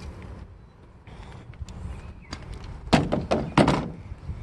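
Battery string trimmer being set down on a pickup's ribbed plastic bed liner: a few light clicks, then a cluster of sharp knocks and clatter near the end.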